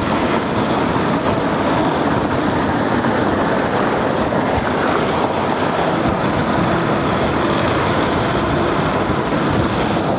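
Wind rushing over the microphone and tyre noise from a Nanrobot N6 72V electric scooter riding fast on a paved road: a loud, steady rushing noise.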